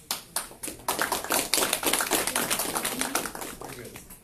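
A small audience clapping: a few scattered claps at first, then a burst of applause from about a second in that thins out near the end.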